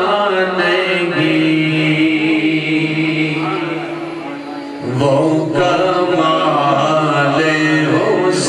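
A man's voice chanting a melodic religious recitation, holding long drawn-out notes. It softens about four seconds in, then a new phrase starts.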